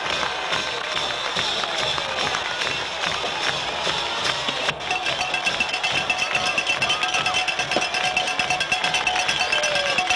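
Crowd noise with voices in the first half, then, about halfway through, music with a quick, steady beat and held tones, typical of a band playing in a stadium.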